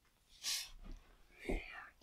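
A child's quiet breath and a faint whispered sound between words: a soft hiss of breath about half a second in, then a short whisper near the end.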